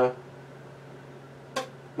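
Quiet room tone with a steady low hum in a pause between spoken phrases, and one brief sharp sound near the end.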